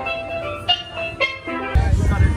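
Steel pan music: a melody of struck, ringing notes. Near the end it cuts off abruptly into wind rumbling on the microphone.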